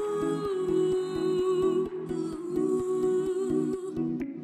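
Background music: one long held melody note, wavering slightly in pitch, over a steady ticking beat.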